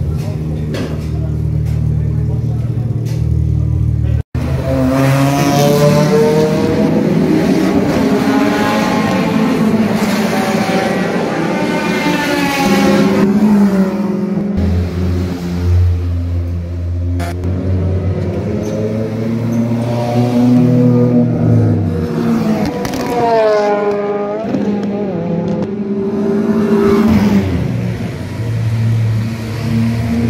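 Race car engines idling and revving at close range in the pit garage and pit lane. Pitch climbs and falls repeatedly as throttle is blipped, with a steadier low idle in the middle. There is a sudden break about four seconds in.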